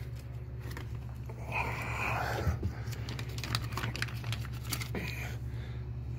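Handling noise: faint rustling and small clicks, twice rising into brief scuffing about a second and a half in and near the end, over a steady low hum.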